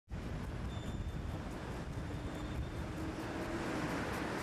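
Outdoor city street noise: a steady low rumble of traffic.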